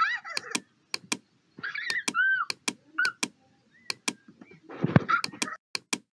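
Computer mouse clicking repeatedly, about a dozen sharp clicks, often in quick pairs. Short high squeaky chirps sound between the clicks, with a dull thump about five seconds in.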